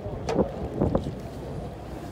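Boat engine running steadily under wind noise on the microphone, with two brief louder sounds about a third of a second and a second in.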